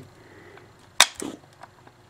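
A single sharp click about a second in, as small disc magnets moved by hand snap into contact.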